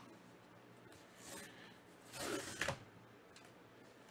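Tear strip being ripped open along a white rigid cardboard mailer: a faint scrape about a second in, then a short, louder paper-and-cardboard tearing sound about two seconds in.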